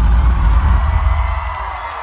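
Live hip-hop concert music through a large PA, heard from the crowd: heavy bass that fades away toward the end, with the audience cheering.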